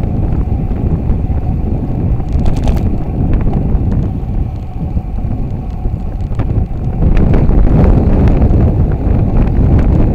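Wind buffeting the microphone of a bicycle-mounted camera on a fast road descent, a loud low rushing with a few sharp clicks, growing louder about seven seconds in.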